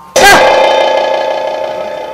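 A sudden loud dramatic musical sting: a sharp hit followed by a buzzy, held chord that slowly fades.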